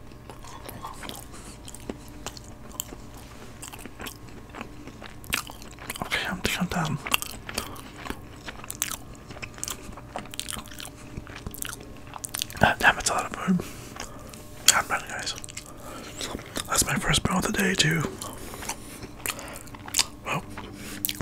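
Close-miked chewing and mouth sounds from eating chicken fajitas and rice: wet smacks and clicks coming in bursts, loudest in the second half.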